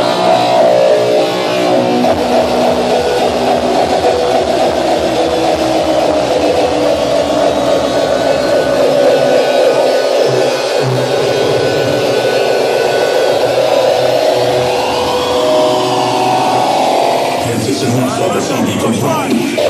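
Loud electronic dance music played live over a club sound system. A pounding kick drum comes in about two seconds in and drops out briefly near the middle, with a rising sweep near the end.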